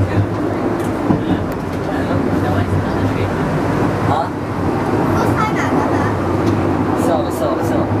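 Penang Hill funicular railway car running along its cable-hauled track, heard from inside the cabin: a steady low hum and running rumble, with passengers' voices chattering over it.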